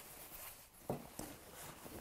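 Faint rustling of cotton fabric being handled, with a couple of soft taps about a second in.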